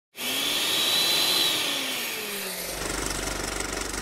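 Electric blender sound effect whirring, with a high whistle and a slowly falling motor pitch. About two and a half seconds in it turns into a fast, even mechanical rattle over a low hum.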